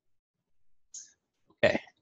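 A man's voice saying "okay" and clearing his throat near the end, after a mostly quiet stretch with one brief soft hiss about a second in.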